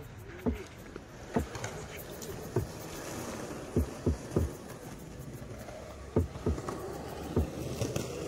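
Deep electronic kick-drum hits, about a dozen, each dropping quickly in pitch and spaced unevenly, as from a hip-hop beat on a portable speaker.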